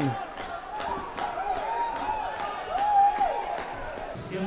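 Ice hockey arena crowd celebrating a goal: a steady beat of about three strokes a second, with a wavering high-pitched tune rising and falling over it.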